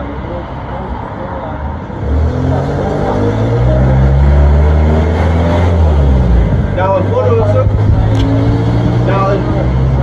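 Engine of a large road vehicle running close by on the street, getting much louder about two seconds in and staying loud with a deep steady drone.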